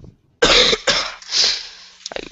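A person coughing three times in quick succession over a video-call microphone; the cougher has a sore throat that the speakers put down to an allergy.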